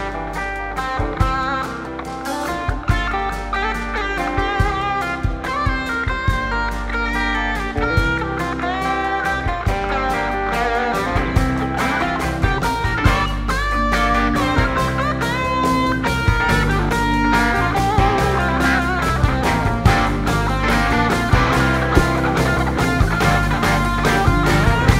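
Blues-rock band playing an instrumental section live: a Les Paul-style electric guitar solos with bent notes over drums and bass, the sound building gradually.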